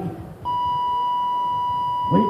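A single steady electronic beep tone, one unchanging pitch held for about two seconds from about half a second in.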